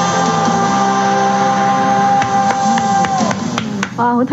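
A Cantonese pop-rock song with electric guitar, drums and bass ends on a long held final note that dies away a little after three seconds in. A few sharp clicks follow near the end.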